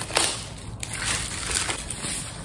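Clear plastic shrink-wrap crinkling and crackling as it is pulled off a stretched canvas.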